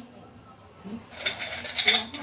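Small hard sweets clinking and rattling against a china plate as a handful is picked up: a quick run of small clicks starting about a second in, loudest near the end.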